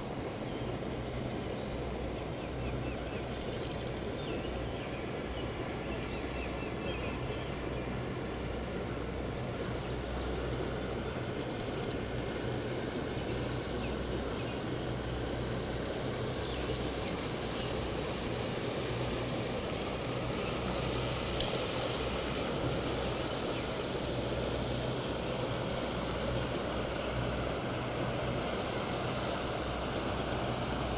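Steady wind noise and outdoor ambience on the water, with a few faint bird chirps near the start.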